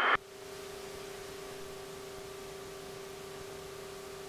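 Steady hiss with a faint, even electrical hum on the aircraft's cockpit intercom audio.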